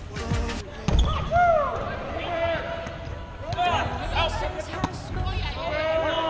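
Volleyball being struck and bouncing on a hardwood gym floor during a rally: a few sharp smacks, the loudest about a second in, with players' shouts and calls between them.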